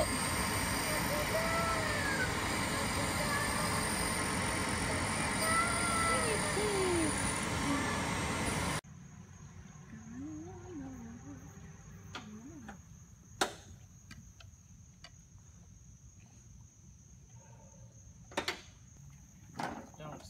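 Automated key-duplicating kiosk running loudly, a grinding whir with shifting squeals as it cuts a key. About nine seconds in, it gives way to a quiet outdoor bed of steady high insect buzzing, crickets or cicadas, with a few sharp clicks.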